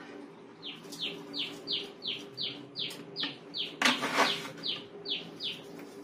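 A bird calling: a run of about fourteen short notes, each sliding down in pitch, about three a second. A brief louder scrape or clatter about four seconds in, over a faint steady low hum.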